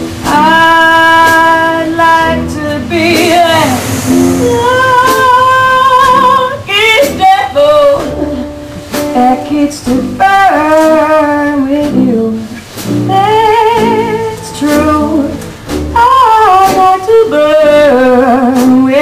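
Woman singing a jazz song with vibrato on long held notes, backed by a small New Orleans-style band with sousaphone bass.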